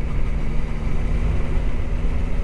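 Motorcycle engine running steadily as the bike rides along, with a low rumble underneath.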